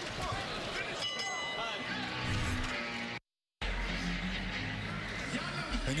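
Arena crowd noise with a boxing ring bell ringing out about a second in, marking the end of the round. Just past the halfway point the sound cuts out completely for a moment, then returns with low, steady music.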